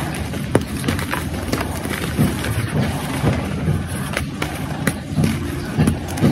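Brittle reformed gym chalk snapped and crumbled by hand, a run of sharp, irregular crunchy cracks. Under it is a steady low background rumble.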